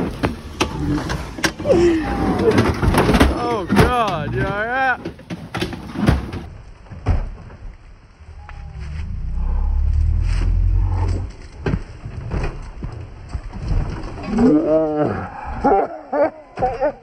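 A car engine labouring up a steep dirt hill: a low rumble that swells about nine seconds in and fades out by about twelve seconds. Scattered sharp knocks run through the clip, and voices and laughter sound over the engine.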